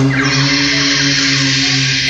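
A rock band's closing chord ringing out: a steady low sustained note over a wash of high noise, stopping at the very end.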